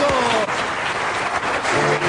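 Studio audience applauding steadily as a comedy sketch ends.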